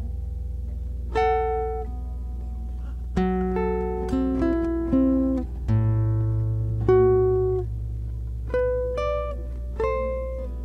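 Classical guitar playing a slow melody: plucked single notes and small chords, each left to ring and die away, over sustained low bass notes.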